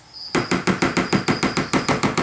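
A metal spoon beating a thick gecko food mixture in a plastic bowl, making a rapid, even run of taps that starts about a third of a second in. A steady high chirping of crickets runs behind it.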